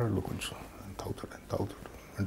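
Quiet speech: a man speaking softly in a few short, broken phrases.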